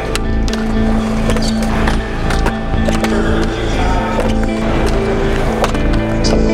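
Skateboards on a concrete street course, with wheels rolling and several sharp clacks and knocks of boards and trucks hitting the ground, rails and ledges, under background music.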